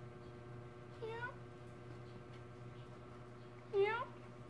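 Domestic cat meowing twice: a short meow about a second in and a louder one near the end, each rising in pitch, over a steady low hum.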